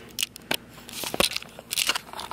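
Handling noise from a handheld camera being swung around: a run of sharp clicks, knocks and rustling, loudest about a second in and again near the end.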